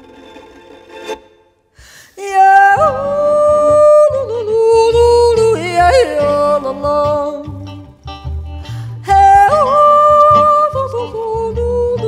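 A woman yodelling without words, her voice flipping sharply between low and high notes, over a Swiss folk band of fiddle, schwyzerörgeli, electric guitar and double bass. The music almost stops for a moment, then the yodel and the full band come in together about two seconds in, with a short dip near eight seconds.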